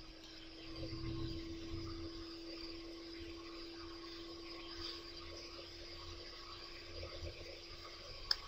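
Quiet room tone with a faint steady hum, one unchanging pitch, over low background noise.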